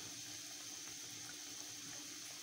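Pan of water with hand-made vermicelli at a full boil: faint, steady bubbling.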